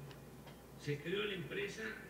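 Speech only: a man speaks one short phrase about a second in, in a thin-sounding voice with its high end cut off.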